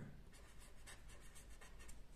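Felt-tip marker writing on paper: a quick run of faint, short pen strokes, several a second.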